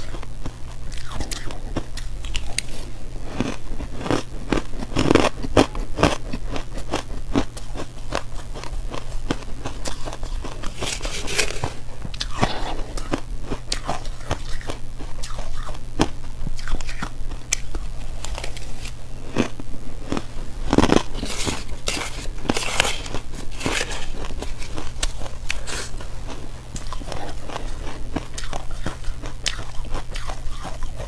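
Close-up crunching and chewing of crushed purple ice: a dense run of crisp crackles, with several louder bites scattered through, over a steady low hum.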